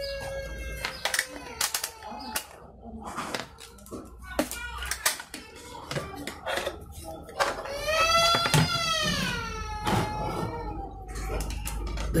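Scattered light clicks and knocks of test leads and parts being handled on a wooden table. About eight seconds in, a long, high call rises and falls in the background.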